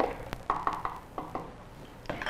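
A few light knocks and clicks, about half a dozen spaced over the first second and a half, from handling at a countertop blender jar while a thick banana and sunflower-seed mix is stirred down by hand.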